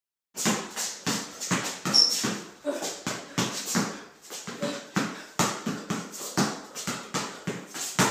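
Basketball dribbled rapidly on a concrete garage floor, about two to three bounces a second, each bounce echoing in the garage. A few brief high squeaks come between the bounces.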